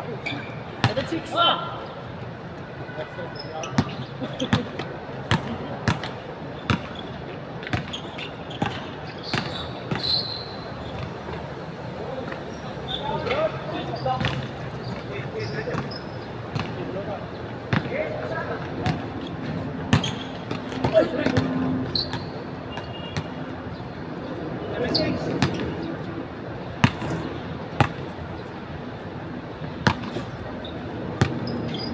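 Basketball bouncing and thudding on a hard outdoor court during a pickup game: irregular dribbles and knocks scattered throughout, with players' voices calling out now and then.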